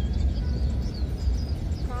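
Steady low rumble of a car driving along a flooded road, heard from inside the cabin, with a wash of noise from the floodwater around it.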